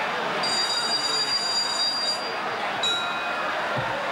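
A round bell rings over steady stadium crowd noise: one high ring held for about two seconds, then a second short ring about three seconds in, marking the change of rounds in a Muay Thai bout.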